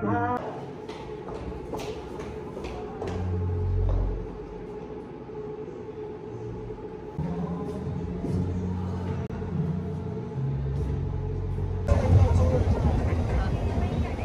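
Low rumbling under a steady hum, changing abruptly about twelve seconds in to outdoor street noise with voices.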